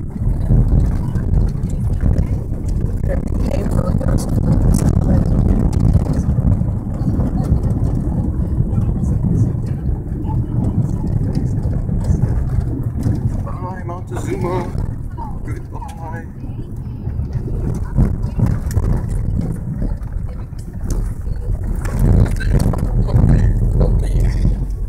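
A car driving on an unpaved dirt road, heard from inside the cabin: engine and tyres make a loud, steady low rumble.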